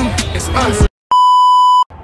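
Hip hop music with rapping cuts off abruptly just under a second in. After a brief silence, a loud, steady, high electronic beep sounds for about three-quarters of a second.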